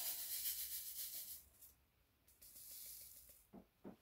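Pink resin square diamond-painting drills rattling in a hand-held sorting tray as it is shaken, lining the drills up in the tray's grooves. The rattling comes in two bouts, the second starting about two seconds in.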